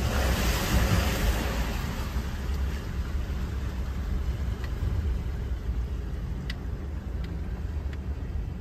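Inside a moving vehicle's cabin: steady low engine and road rumble while driving slowly, with a louder hiss in the first second and a half as the tyres run through standing floodwater on the road.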